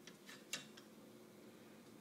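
Near silence with a couple of faint clicks about half a second in, from the small electric lathe motor being handled against its metal mount.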